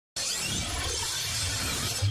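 Intro sound effect for an animated logo: a dense, even noise that cuts in abruptly just after the start and holds steady.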